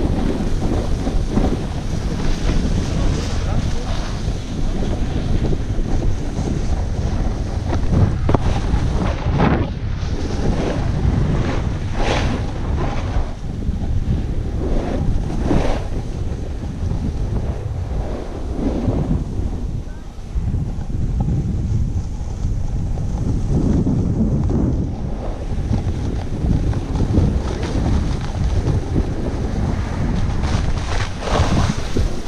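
Wind buffeting an action camera's microphone during a fast downhill run on a groomed ski slope, a loud steady rush with short surges. Underneath is the hiss and scrape of the rider sliding over packed snow.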